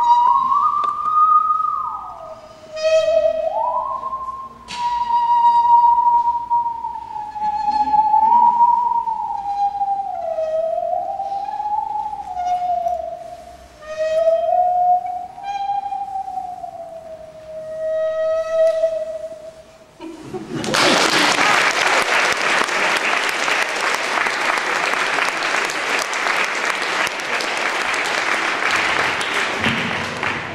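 Musical saw played with a bow: a single pure tone that slides and wavers in pitch like a voice, holding its last note for a couple of seconds. About twenty seconds in it stops and the audience applauds, the loudest sound here.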